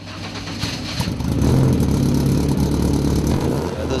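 Zolfe GTC4 sports car's engine heard at its twin exhaust tailpipes. It grows louder over about the first second and a half, then runs steadily.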